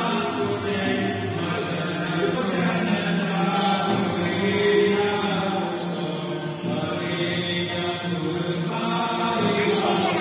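Devotional chanting with music, a continuous sung chant held on long steady notes.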